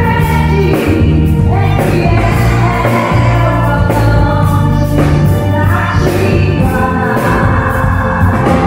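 A woman singing a gospel song live into a microphone over an amplified band, with a steady beat.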